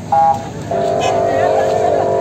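Vehicle horns honking: a brief higher-pitched honk right at the start, then a lower horn held steadily from just under a second in.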